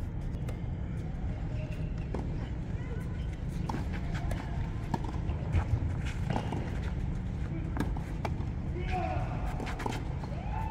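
Tennis ball struck back and forth by rackets in a rally on a clay court: short sharp hits about every one and a half seconds over a steady low rumble.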